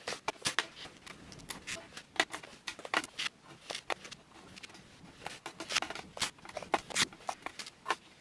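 Disposable paper face towels handled and torn off a roll and stacked into a clear acrylic holder: a string of short, irregular paper rustles and rips.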